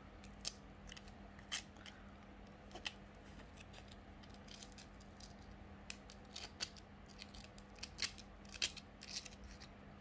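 Abrasive paper rubbing along a thin coated copper wire in faint, irregular short scratches, which come more often in the second half. The rubbing is stripping the insulating coating to bare the copper.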